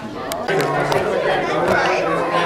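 Chatter of many people talking at once in a large hall, no single voice standing out. It grows louder about half a second in.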